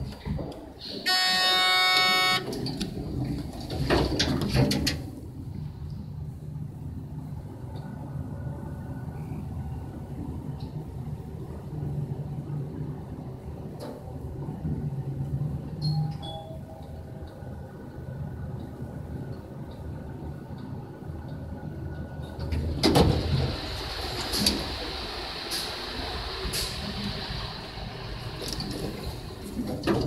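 Hydraulic passenger elevator: a steady electronic tone for about a second, the doors sliding shut, then the steady low hum of the hydraulic pump unit as the car rises. Near the end the ride stops and the doors slide open.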